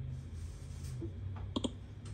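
A computer mouse click, a quick pair of sharp clicks (press and release) about one and a half seconds in, over a faint steady low hum.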